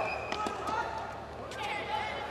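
Several sharp knocks of a tennis ball, bouncing on the court or struck by a racquet, spread unevenly through the moment, with voices talking in the background.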